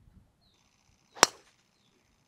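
A driver striking a golf ball played straight off the fairway grass with no tee: one sharp, loud crack about a second in.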